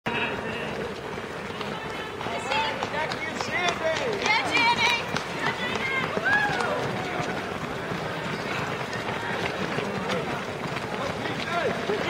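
Footsteps of a large pack of runners on a paved road as they pass close by, with voices calling out among them for a few seconds near the middle.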